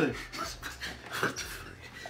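A man laughing in a few short, breathy huffs.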